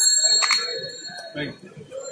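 A small metal bell ringing, its few clear high tones fading over the first second or so, with a sharp click about half a second in and voices behind.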